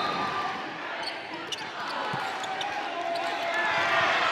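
Live basketball game sound: sneakers squeaking on the court, a ball bouncing once about two seconds in, and the voices of players and crowd in the gym.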